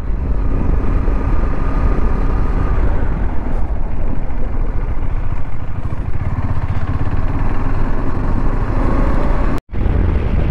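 Motorcycle running on the road, its engine mixed with wind rushing over the camera's microphone, as the bike slows and then picks up speed again. The sound cuts out suddenly for a moment near the end.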